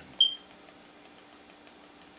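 A single short, high-pitched beep-like tone that fades quickly, about a fifth of a second in, followed by a faint steady electrical hum.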